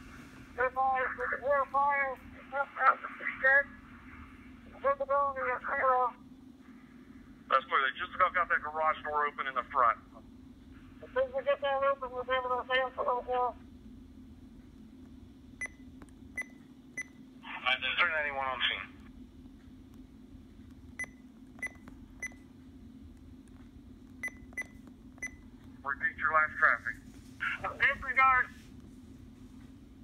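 RadioShack PRO-668 digital scanner playing back narrow, garbled two-way radio voices through its small speaker over a steady low hum. Around the middle comes a run of short electronic key beeps in clusters of three or four as its playback buttons are pressed.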